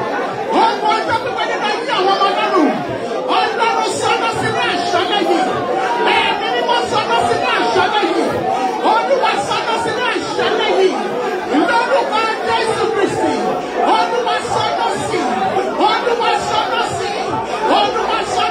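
A congregation praying aloud all at once: many overlapping voices merging into a steady, loud babble with no single voice standing out.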